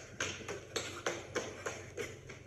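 Quick footsteps on a hard floor, about three a second: a person hurrying along.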